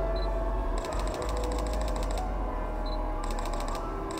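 Sony A6100 camera shutter firing in continuous-shooting bursts of rapid clicks, about ten a second: one burst of about a second and a half, then a second burst starting near the end.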